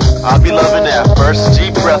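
Hip-hop track: a looped beat with a steady bass line and drums, with a rapper's voice coming in over it a fraction of a second in.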